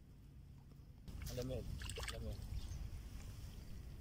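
A hooked fish splashing and thrashing at the water's surface as it is drawn in on a long pole rod, starting about a second in with several sharp splashes. Short voice sounds come in among the splashes.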